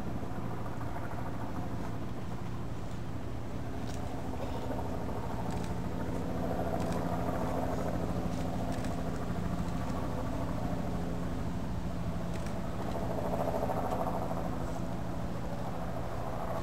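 A steady low motor hum, swelling louder twice, around six and thirteen seconds in.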